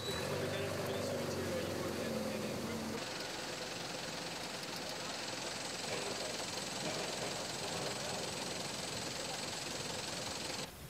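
Street noise: a vehicle engine running, with voices.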